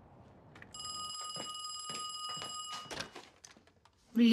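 A telephone ringing: one steady electronic ring of about two seconds, followed by a few clicks and knocks.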